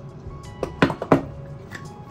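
Three or four sharp clicks in quick succession, from a little over half a second to just past a second in, from a kitchen utensil handled while a salad is being seasoned. Faint steady background music runs under it.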